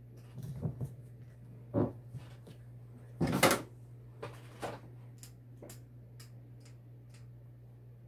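Hands handling things on a heat press table: a few soft knocks and rustles, the loudest a short scraping rustle about three seconds in, over a steady low hum.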